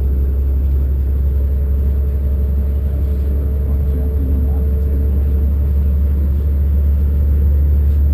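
Steady low rumble of a moving vehicle heard from inside its cabin. A faint steady hum rides on it and fades out about halfway through.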